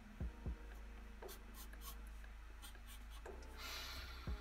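Felt-tip marker strokes scratching faintly across paper as jagged lines are drawn, with two soft low knocks in the first half second and a longer, brighter stroke near the end.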